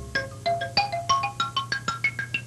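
Music: a quick melody of struck, bell-like notes, each ringing briefly, about seven or eight notes a second.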